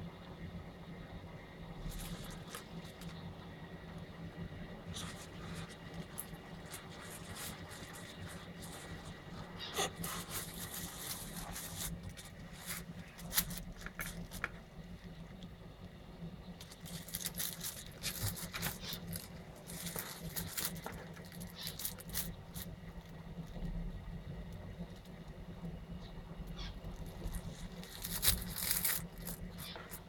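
Scattered rustling, scraping and clicking in a monitor lizard's terrarium, in bursts, over a steady low hum.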